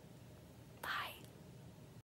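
A blown kiss: a soft lip smack followed by a breathy, whispered puff of air, about a second in.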